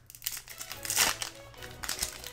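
A foil Yu-Gi-Oh booster pack wrapper crinkling and tearing as it is ripped open by hand, with a louder crackle about a second in.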